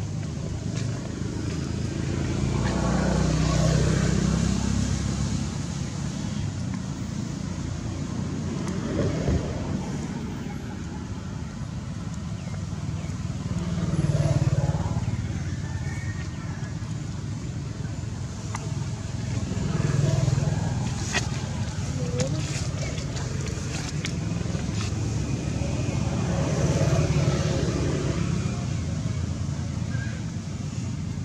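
Steady outdoor background rumble of distant road traffic, swelling and fading about four times as vehicles go by.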